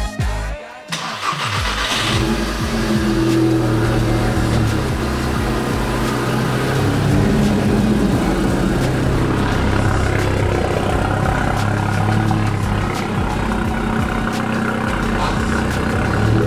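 Volkswagen Golf GTI Mk6's turbocharged 2.0-litre four-cylinder engine starting about a second in, then running with its revs rising and falling.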